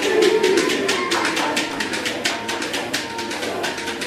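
A group clapping hands in a quick, steady rhythm, several claps a second, under women's voices singing and calling in traditional Fulani music.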